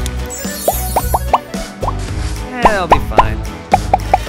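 Cartoon pop sound effects: a string of short, quick, upward-sliding 'bloop' blips in several runs, over background music.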